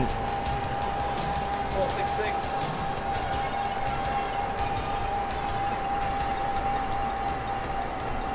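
Wattbike indoor bike's flywheel spinning, a steady whirr with a constant whine.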